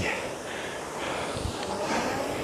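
Concept2 RowErg air-resistance fan flywheel spinning with a steady whir during the recovery of a stroke, as the seat slides forward.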